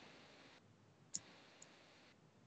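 Near silence broken by two short clicks at a computer workstation, about half a second apart, the first louder than the second.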